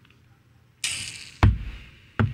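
A short hissing whoosh about a second in, followed by a single sharp thump.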